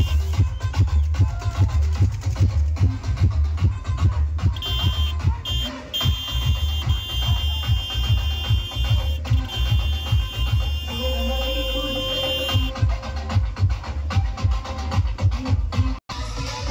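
Electronic dance music played very loud through a large DJ truck's sound system, driven by heavy, fast-pulsing bass. A high, steady beeping synth line comes in about four seconds in and runs for several seconds.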